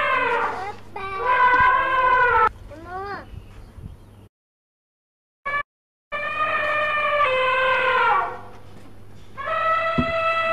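Elephant trumpeting: long, held calls that slide down in pitch at the end, repeated about four times. A few short rising squeaks follow the second call, and there is a brief gap of silence in the middle.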